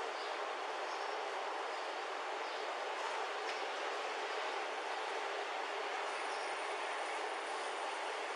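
Steady rushing background noise, even and unchanging, with a faint high whine joining about six seconds in.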